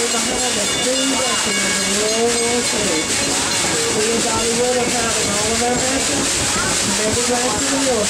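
Steady hiss and rumble of a steam train in motion, heard from an open passenger car, with indistinct voices over it.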